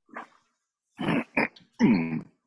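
A person clearing their throat: a few short, rough, voiced grunts starting about a second in.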